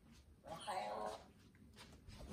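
A macaw giving one brief, soft call about half a second in, lasting under a second.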